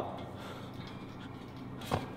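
Quiet room tone, then one sharp knock or click just before the end.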